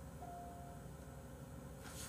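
Quiet room tone with a low hum. One faint held note sounds for about half a second, a quarter second in.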